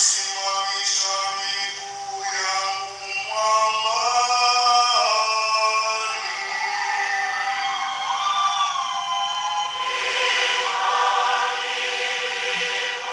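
A man singing a liturgical chant solo through a microphone and loudspeakers, with long held notes and slow slides between them.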